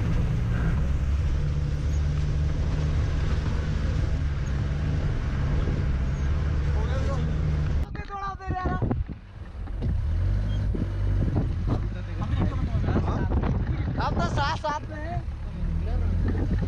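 Tata Sumo's engine and tyres on a rough gravel mountain road, heard from inside the cabin as a steady low rumble. It cuts off suddenly about halfway through, then the rumble returns with voices over it.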